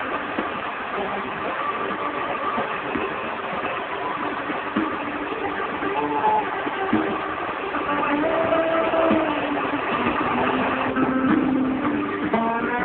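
Sound channel of a distant Italian TV station received by sporadic-E skip on a Hitachi P-32 black-and-white portable TV: faint music buried in dense hiss, the mark of a weak, fading long-distance signal. The music comes through more clearly near the end.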